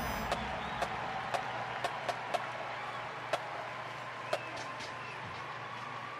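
Crowd in a large stadium applauding, slowly dying down, with scattered individual claps standing out.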